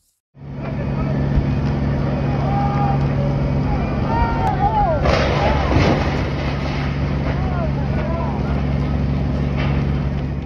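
Steady low drone of a fire engine's motor and pump running at a building fire, with people's voices calling out in the middle of it.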